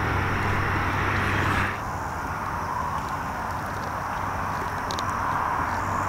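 Steady outdoor background noise, an even rush with no distinct events. A low hum underneath it stops a little under two seconds in, and the overall level dips slightly there.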